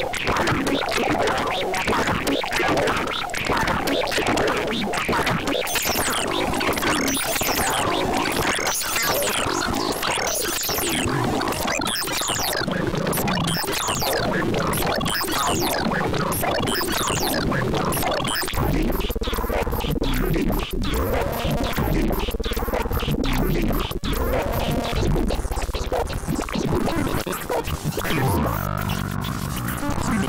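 Electronic pulsar-synthesis texture from the Pulsar Generator synthesizer software: a dense, crackling stream of rapid pulses. About eighteen seconds in, a low steady drone enters under a repeating figure of arching tones.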